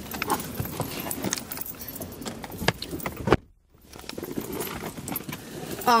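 Light clinking and rattling of small objects being handled inside a car, a run of short irregular clicks, with a brief drop-out about three and a half seconds in.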